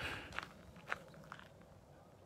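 Faint footsteps of a person walking: about three soft steps roughly half a second apart.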